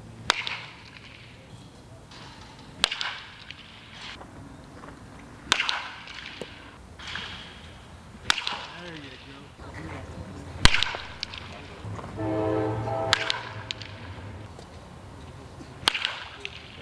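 Baseball bat hitting pitched balls in batting practice: seven sharp cracks about every two and a half seconds, the loudest just past the middle.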